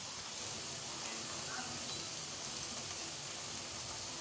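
Chopped onions and tomatoes frying in oil in a non-stick pan, giving a steady, even sizzle.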